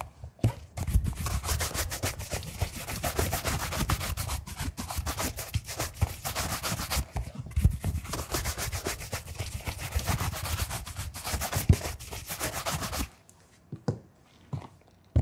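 A bristle shoe brush worked in quick back-and-forth strokes over a leather shoe, spreading the freshly applied coloured cream evenly into the leather. The strokes pause briefly about halfway and stop about a second before the end.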